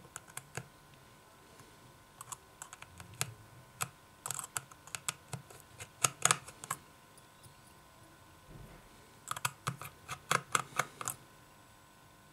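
Small precision screwdriver clicking and ticking against the tiny screws and metal bracket inside an iPhone 6 as the screws are undone. The light clicks come in several quick clusters, the loudest a little past halfway and another run near the end.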